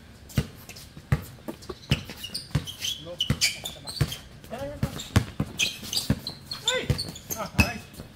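A basketball bouncing on a hard outdoor court as it is dribbled: a run of sharp bounces, about two a second.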